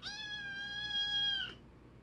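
Two-month-old kitten meowing: a single long call, steady in pitch, that dips slightly and stops about a second and a half in.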